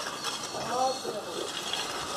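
Steady low background noise of an open-air building site, with a faint distant voice about a third of the way in.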